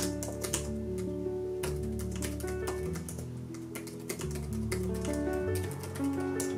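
Typing on a laptop keyboard, irregular runs of key clicks, over soft solo piano background music playing slow sustained notes.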